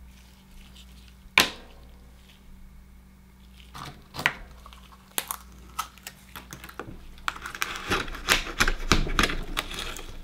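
A knife prying open and scraping inside an akoya pearl oyster's shell on a wooden cutting board: a dense run of quick clicks and scrapes over the last few seconds. Before it come one sharp click about a second in and a few scattered clicks.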